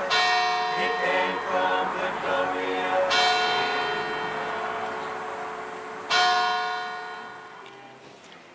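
A bell struck three times, about three seconds apart, each stroke ringing on and slowly fading. Faint singing sounds under the first stroke.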